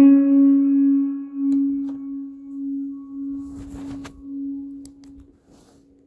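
The last note of the background music: a single held, ringing tone that pulses in loudness as it decays and dies away near the end.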